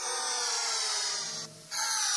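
Buzzing electronic synth sound in a rave DJ mix, its many overtones gliding slowly downward in pitch, with a short drop-out about one and a half seconds in.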